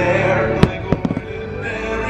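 Aerial fireworks shells bursting over loud music: one sharp bang a little over half a second in, then a quick string of four smaller cracks about a second in.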